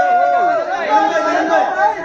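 Several voices talking and calling out over one another at once, a loud jumble of chatter.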